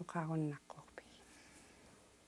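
A man's voice speaking one short syllable, then a pause of quiet room tone with a couple of faint clicks.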